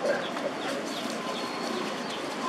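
Short, falling, high-pitched animal chirps repeating a few times a second over a steady outdoor hiss.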